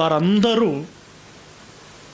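A man speaking in Telugu for the first second, then stopping; after that only a steady faint hiss is heard.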